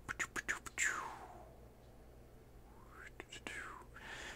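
Faint whispering and mouth noises from a man murmuring under his breath, with a run of quick soft clicks in the first second and faint sliding tones.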